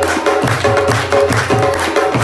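Instrumental passage of Pashto folk music: a rabab plucked in a repeating melodic phrase over hand percussion struck in a steady, even rhythm.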